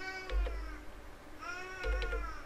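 A cat meowing twice, each call a short rise and fall in pitch, with two soft low thumps.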